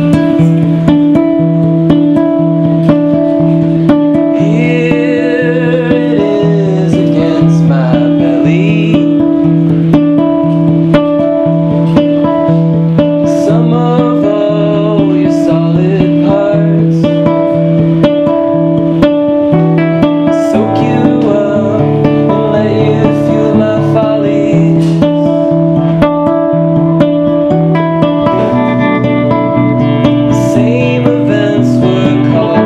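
A live band performance: acoustic guitar played in a steady repeating pattern under a male lead voice singing, with bass guitar and light mallet percussion. The bass line moves lower about twenty seconds in.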